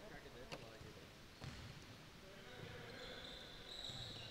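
A basketball bouncing faintly on a hardwood gym floor, a few separate bounces.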